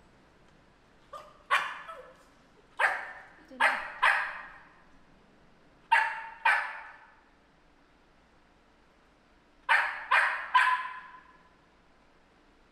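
A dog barking, about nine sharp barks in short runs of two or three, each trailing off quickly.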